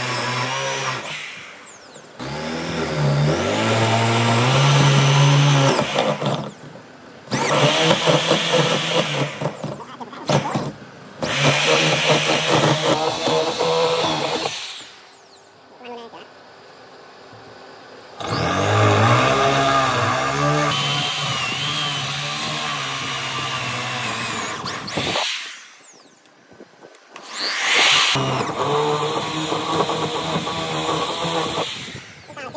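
Corded electric drill boring holes into a wooden beam, running in several bursts of a few seconds. Its motor spins up with a rising whine at each start and stops in short gaps between holes.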